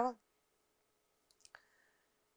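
A woman's word trailing off, then near silence with faint room hum and two small clicks about one and a half seconds in.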